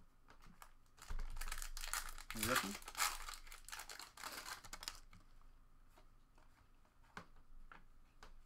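Foil wrapper of a trading card pack being torn open and crinkled, a dense crackling that starts about a second in and lasts about four seconds.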